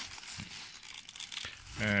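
Polystyrene packing peanuts rustling and crinkling as a small cardboard box is handled and turned among them: a dense, irregular crackle of fine ticks.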